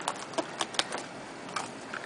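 Plastic wrap crackling and scattered small clicks as a sealed box of trading cards is torn open and handled.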